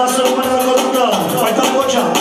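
Live amplified dance music: a man singing into a microphone, his voice sliding down in pitch about a second in, over the band's instruments and a steady ticking beat.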